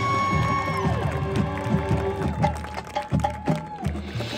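Marching band playing: brass and wind chords held, then sliding down in pitch just under a second in. The music thins to a lighter held note over scattered sharp percussion clicks, and the low parts drop out near the end.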